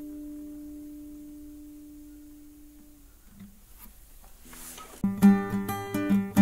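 Background music on guitar: a held chord fades away, then strummed chords start again about five seconds in.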